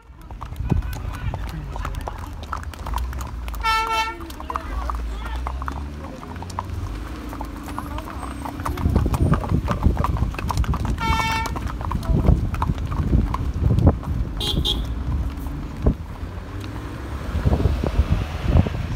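Car driving on a rough road, with a steady low rumble and scattered knocks and rattles. Two short horn beeps sound, about four and eleven seconds in.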